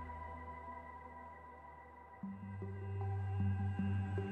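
Ambient space music of sustained drone tones. The sound fades down through the first half, then a new low chord comes in suddenly about halfway and swells.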